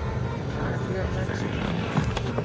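Steady low rumble of a car driving slowly, heard inside the cabin, with faint voices.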